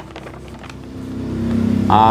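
A motor engine running steadily, its hum growing louder from about a second in, with a few faint paper clicks in the first half.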